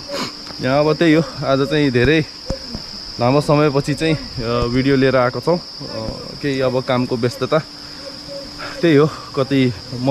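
Steady, high-pitched insect chorus drone running without a break, under a man talking in stretches.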